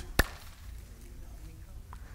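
A single sharp knock shortly after the start, then quiet room tone with a low hum.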